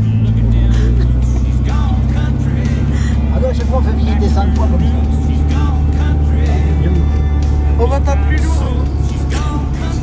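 Vintage car's engine droning steadily, heard from inside the cabin while driving, with music and indistinct voices over it.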